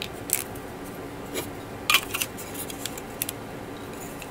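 Small plastic model-kit parts being handled and fitted together by hand: a few light, sharp plastic clicks and scuffs, with a cluster about two seconds in.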